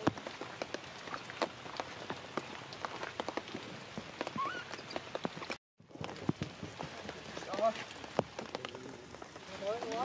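Rain pattering steadily on wet leaves and ground, a dense patter of drops that cuts out for a moment a little past the middle. Toward the end a baby macaque gives short, wavering cries.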